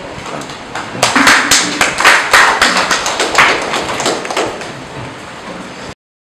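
Small group of people clapping, a scatter of separate claps that starts about a second in and thins out. The sound cuts off suddenly near the end.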